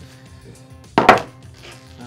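A single sharp snap about a second in, from side cutters closing on the wire control rod at a servo arm, over steady background music.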